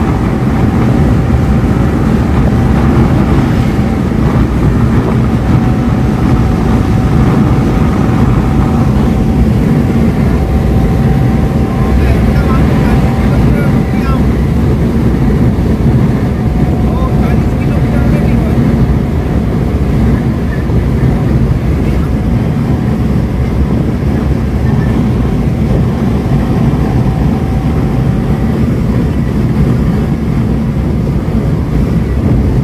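Maruti Suzuki Eeco petrol van cruising at highway speed, heard from inside: a steady, loud mix of engine drone, tyre rumble and wind noise. A thin, steady whine runs under it and fades out near the end.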